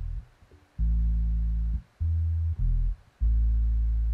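Bass track played back on its own: four separate low notes, each held from half a second to about a second, with short gaps between. It is still unprocessed, and in the mixer's judgment it lacks depth and a tail at the bottom end.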